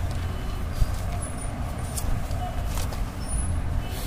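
Textbook paper being handled as the page is changed, giving a few brief rustles about two and three seconds in, over a steady low background rumble.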